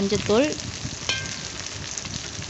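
Sliced ivy gourd and onions frying in oil in a kadai, with a steady sizzle.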